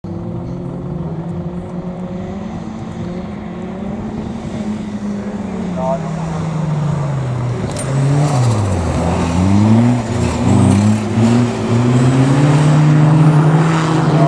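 Autograss racing cars, a special buggy and a saloon, running hard on a dirt oval. Their engines grow louder as they come closer, and the engine pitch drops and climbs several times as they take the bend.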